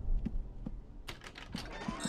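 Light footsteps of a small child walking on a hard floor: a handful of soft, spaced clicks, with a door latch clicking open near the end.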